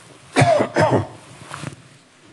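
A person coughing twice in quick succession, followed by a weaker third sound.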